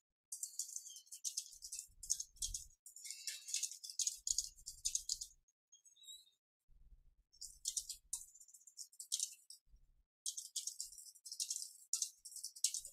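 Computer keyboard typing in quick runs of clicks, pausing briefly about six seconds in and again near ten seconds.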